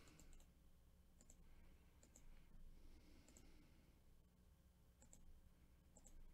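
Near silence broken by a few faint computer mouse clicks, each a quick double tick, irregularly spaced about a second or two apart.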